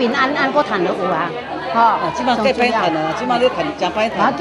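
Speech only: two women talking in conversation.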